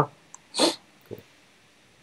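A person's short breathy sound, like a quick exhale, about half a second in, with a faint spoken "cool" after it. The rest is very quiet.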